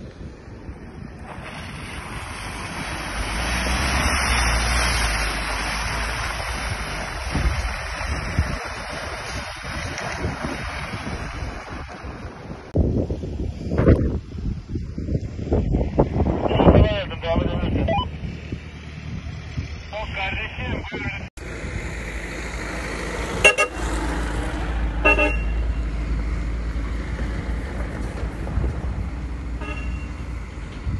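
A vehicle driving through mud, its engine and tyre noise rising as it comes closer, then voices. After a cut comes a steady engine rumble with two short car-horn toots.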